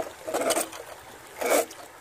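Water trickling through a gold sluice box with its flow turned down, with two short splashes about a second apart.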